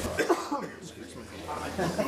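A short cough in the meeting room, followed by faint voices.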